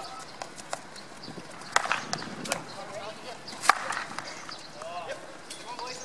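Field hockey sticks striking balls on an artificial turf pitch: sharp cracks, two loud ones about two seconds apart with fainter knocks between, and players' shouts in the background.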